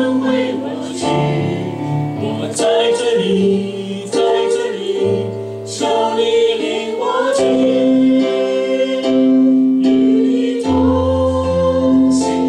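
A man singing while accompanying himself on a Korg electronic keyboard, with held chords and a steady bass line under the sung melody.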